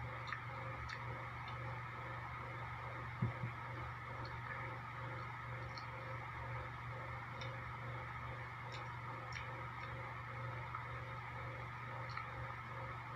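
Person chewing grilled squid off a skewer: faint, scattered mouth clicks over a steady low hum, with one low thump about three seconds in.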